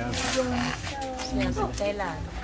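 Speech: people talking, with a short breathy burst of voice at the start.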